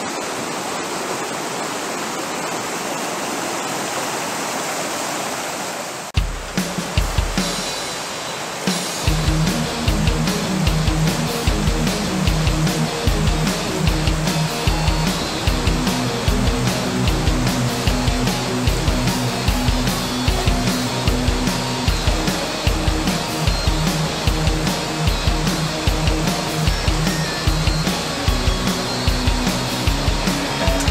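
Steady rush of a shallow rocky river for about six seconds, then cut off by background music with a steady beat that carries on.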